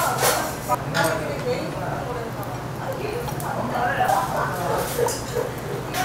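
Restaurant table sound: faint, indistinct voices over a steady low hum, with a few short clinks of tableware, one near the start and one at the very end.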